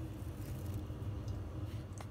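Low steady hum with a few faint light taps and no blender running.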